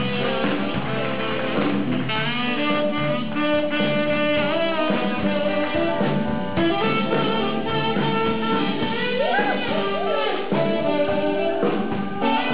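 Live blues band playing an instrumental passage with electric guitar, keyboards, bass and drums, and a saxophone taking the lead line.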